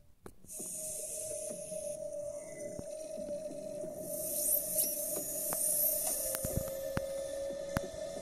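Ambient sound design of a television sponsorship ident, played on a TV set. A steady held tone and a high airy hiss begin about half a second in, with a few rising whooshes in the second half and scattered clicks.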